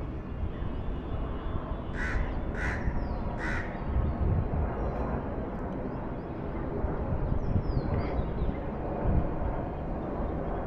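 A crow cawing three times in quick succession, between about two and three and a half seconds in, over a steady low outdoor rumble.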